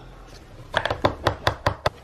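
Tint brush stirring hair bleach powder and developer in a plastic bowl. About halfway in it knocks against the bowl in a quick run of about eight sharp clicks.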